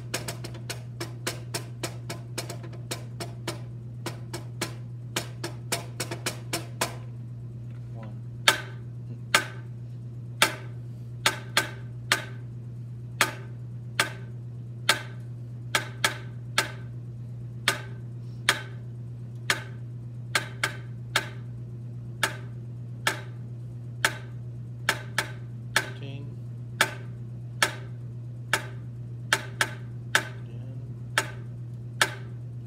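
Wooden drumsticks playing a snare drum rhythm as sharp, dry taps. The taps come quickly, about three or four a second, for the first seven seconds. After that they are louder and spaced out to roughly one a second, with an occasional quick pair.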